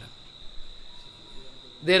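A faint, steady high-pitched tone held over quiet room tone, with a man's voice starting again near the end.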